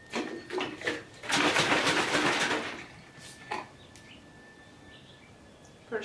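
Crinkling and rustling of a plastic bag and packaging being handled, with a few short squeaky sounds in the first second and the loudest rustle lasting about a second from just over a second in. A single click follows about halfway through, then only faint handling noise.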